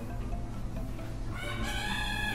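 A rooster crowing, one long call starting about one and a half seconds in, over a steady low background hum.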